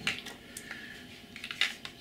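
A few light clicks and small knocks as a plastic model railway track-cleaning wagon is handled and picked up off a wooden baseboard, the sharpest knock near the end.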